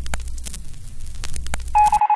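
Low steady rumble inside a taxi cab's cabin while riding, with a few sharp clicks. Near the end, an electronic beeping pattern like telephone dialing tones starts abruptly.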